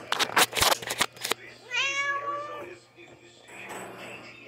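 A kitten meows once, a single drawn-out call lasting about a second, starting just under two seconds in. Before it comes a quick run of sharp clicks and rustles.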